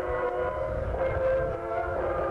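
Band music with long held, horn-like chords that shift every half second or so, over a low rumble.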